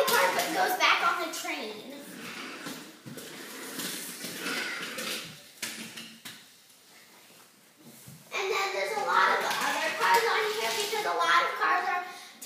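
Young children's voices, mostly indistinct speech, louder near the start and again over the last few seconds, with a quieter stretch in the middle holding a few faint knocks.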